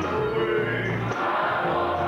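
Live gospel music: voices singing over a band, with held bass notes underneath.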